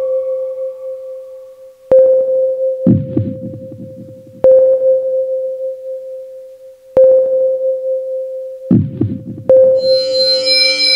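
Sparse electronic intro played on a Roland MC-101 groovebox and TR-6S rhythm machine: a single mid-pitched synth tone is struck about every two and a half seconds, each note ringing out and fading. Twice a low, rumbling hit comes in between the notes.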